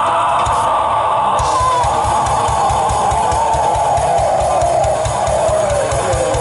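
Heavy metal band playing live: distorted electric guitars over drums, with a rapid, steady kick-drum pattern that starts about a second and a half in.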